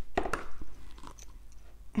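Small handling clicks from jewellery pliers and a beaded fringe earring: two or three sharp clicks in the first half second, then faint rustling.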